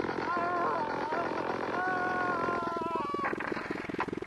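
Experimental analogue electronic music: a sound fed through the Yamaha CS-5 synthesizer's external input and heavily filtered, giving wavering pitched tones over a buzzing, pulsing drone. The tones waver in the first second, break off, then hold steady from about two seconds in before dropping away near the end, with a growling, animal-like quality.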